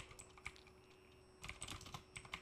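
Faint keystrokes on a computer keyboard: a couple of single clicks, then a quick run of keys in the last half second or so.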